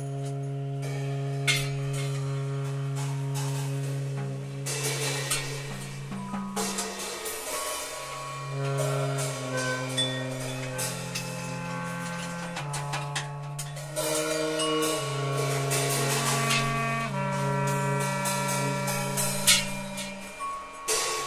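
Free-jazz trio of tenor saxophone and clarinet playing long held notes that change pitch every few seconds, over scattered drum and cymbal strikes.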